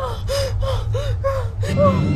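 A person gasping in a rapid run of short, voiced breaths, about four a second, over a steady low background drone.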